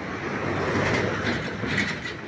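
Rumbling, rattling road-vehicle noise that swells to its loudest about a second in and then eases off.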